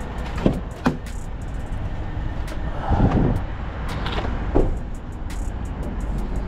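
Low, steady engine rumble of a vehicle at a loading dock, with a louder noisy surge about three seconds in.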